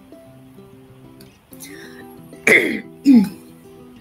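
Soft background guitar music plays steadily, broken by a person coughing twice to clear their throat, two short loud bursts about two and a half and three seconds in.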